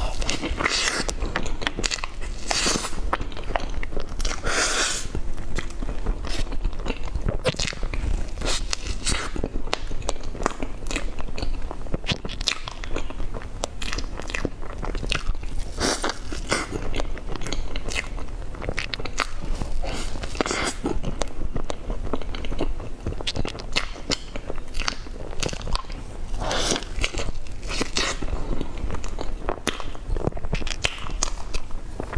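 Close-miked biting and chewing of soft, cream-layered chocolate crepe cake eaten by hand: wet mouth sounds and many small clicks, with a few louder bites scattered through.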